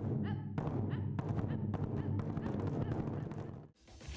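Taiko drums struck with wooden sticks in a quick run of deep, booming hits. The drumming stops abruptly just before the end.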